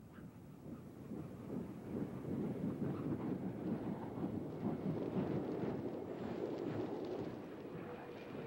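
Steady rushing wind noise on an outdoor microphone, building over the first two seconds, holding, and easing slightly near the end.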